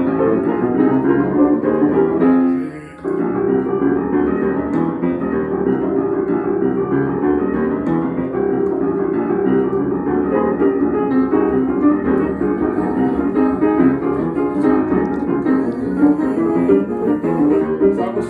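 Upright piano played in a gospel style, the left hand laying down a bassline under right-hand chords. The playing breaks off briefly just under three seconds in, then carries on.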